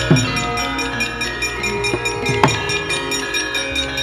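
Javanese gamelan ensemble playing: bronze metallophones and gongs ring on with many steady tones, over a low sustained gong hum. A few sharp struck strokes cut through, two of them close together about two seconds in.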